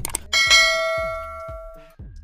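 Notification-bell sound effect from a subscribe-button animation: a short click, then a bright bell ding that rings on for about a second and a half, fading away.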